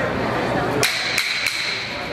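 Boxing ring bell struck three times in quick succession, about a second in, the metal ringing on for about a second.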